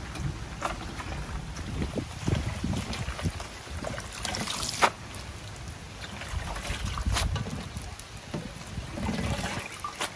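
Water splashing and dripping as leafy greens are washed by hand in a metal basin and lifted, dripping, into a plastic colander, with one sharp knock about five seconds in.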